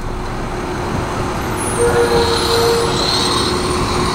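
Emergency vehicles' engines idling: a steady engine rumble with a faint hum, and a short higher tone joining for about a second midway.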